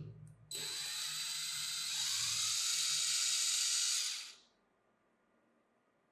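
Cordless drill-driver running in reverse, backing a wood screw out of a pine block through tape stuck over the screw head. The motor whine starts about half a second in after a brief knock, gets louder about two seconds in, and cuts off after about four seconds.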